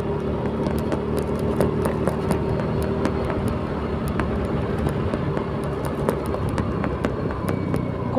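Motor scooter's small engine running steadily under way, a low hum mixed with road and wind noise and scattered light clicks.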